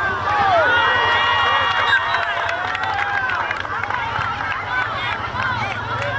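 Many young voices shouting and calling over one another on a football field as a play is whistled dead and players regroup, with a steady low hum underneath.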